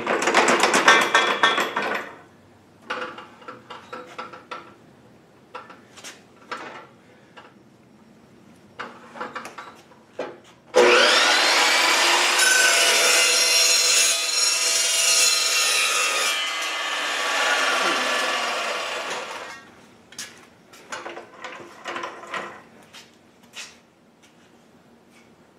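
An Evolution metal-cutting chop saw starts abruptly about eleven seconds in, its whine rising as it spins up. It cuts through galvanized steel fence-rail pipe for several seconds, then winds down with a falling whine. Before that there is a loud scraping rattle in the first two seconds, followed by scattered knocks and clicks as the pipe and tape measure are handled.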